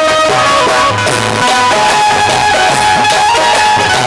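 Instrumental passage of a live bhajan band: a melody instrument playing held notes that step up and down over a steady drum beat.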